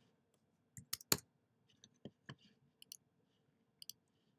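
A few scattered, irregular clicks of a computer mouse and keyboard, the loudest a little over a second in, as right-clicks and short typed entries are made.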